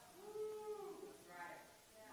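Faint, drawn-out vocal response from someone in the congregation, one long call rising then falling in pitch for about a second, then a short second one.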